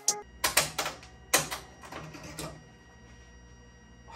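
A handful of sharp, irregular clicks and clacks as the cap frame holding the embroidered trucker hat is taken off the embroidery machine, over a faint low hum. It goes quiet in the last second or so.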